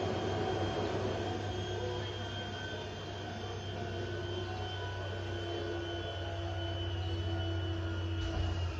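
A steady mechanical drone with a strong low hum and a few faint held tones, easing a little in loudness partway through.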